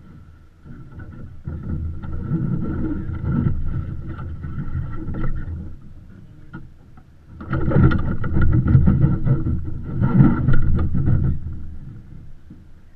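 Rushing, rumbling noise of a sailing yacht under way, wind on the microphone and water along the hull. It swells in two surges of about four seconds each, about two seconds in and again near eight seconds.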